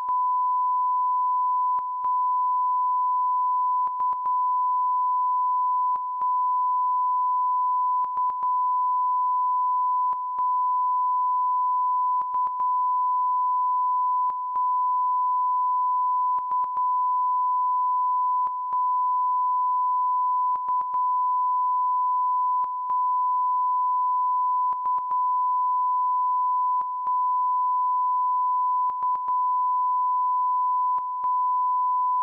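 Broadcast line-up test tone that goes with colour bars: one steady pure beep at a single pitch. It is broken by very short dropouts about every two seconds, alternating one break and a quick double break.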